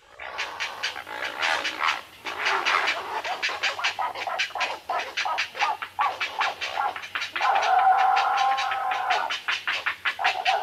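Recorded great blue heron calls played back over a video call: a long run of rapid, harsh rasping notes at about five or six a second, then one longer hoarse croak held for about two seconds near the end. The sound is described as being like somebody choking a dog.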